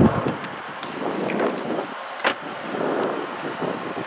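Wind buffeting the microphone and handling noise from a handheld camera being carried, loudest as a low rumble right at the start, with a single sharp click a little past two seconds in.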